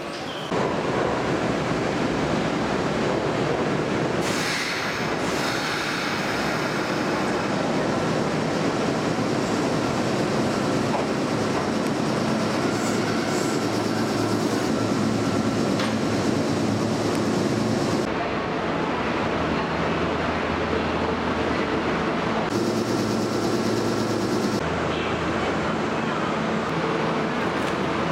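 Kintetsu limited express train running along a platform inside an underground station, a continuous rumble of wheels and motors that changes character several times.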